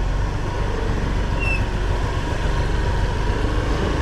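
Motor scooter engine running steadily as the bike rolls slowly, with a low rumble of engine and road noise.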